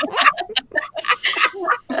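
Several people laughing in short, choppy bursts.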